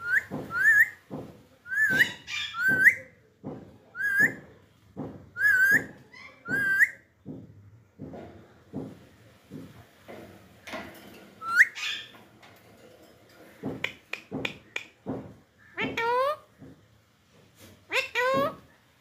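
Alexandrine parakeets calling with short, repeated rising chirps, about a dozen in quick succession over the first seven seconds. A single chirp follows later, and a longer call falls in pitch near the end.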